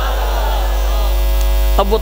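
Loud, steady mains hum from the public-address sound system, under a faint swirling wash of echoing voice.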